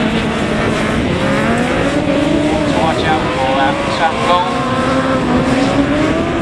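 Autograss single-seater race cars running on a dirt track, their engine notes slowly rising and falling in pitch as they accelerate and lift off.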